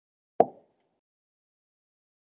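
A single sharp tap about half a second in, short and loud with a quick fade.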